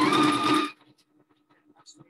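Necchi HP04 electronic sewing machine stitching an appliqué stitch in a short, fast burst that stops abruptly under a second in, followed by faint small ticks.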